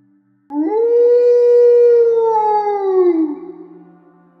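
A single long canine howl that rises quickly to a held pitch and falls away after about three seconds, over a soft, steady ambient-music drone.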